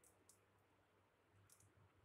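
Near silence, broken by a few faint, short, high-pitched clicks: one at the start, one just after, and a pair about one and a half seconds in.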